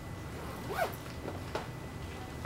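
Thin Bible pages being leafed through at a pulpit: a few short paper swishes and rustles about a second in, over a low room hum.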